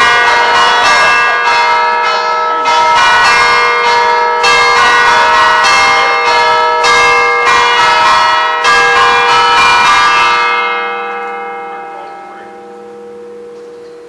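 Church bells ringing loudly, struck again and again in an uneven peal, then stopping about ten seconds in and leaving a fading hum.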